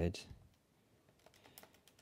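A few faint, light key clicks in the second half, like keys being pressed during a pause in the working.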